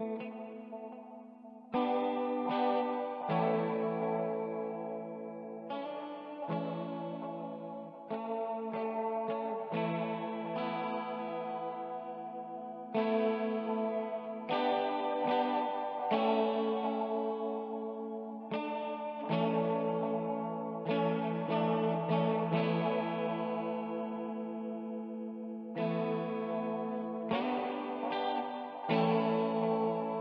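Instrumental music from a single clean guitar run through effects: slow, calm chords struck every second or two, each left ringing and fading into the next.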